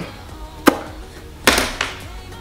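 Handling of a flat makeup palette and brush: a sharp tap about two-thirds of a second in, then a second, longer knock about a second and a half in, with background music underneath.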